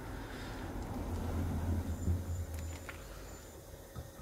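Silicone spatula stirring a thick mayonnaise and herb mixture in a glass bowl: soft, wet scraping and squelching that grows a little louder in the middle and eases off toward the end, with a few faint ticks of the spatula against the glass.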